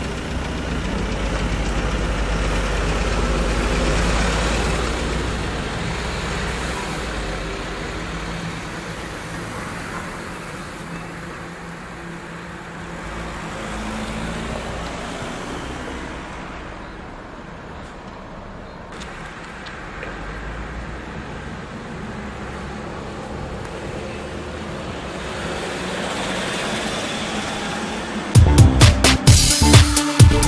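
Street traffic at a junction: a city bus's diesel engine rumbles loudly close by in the first few seconds, then cars drive past, the noise rising and falling as each vehicle goes by.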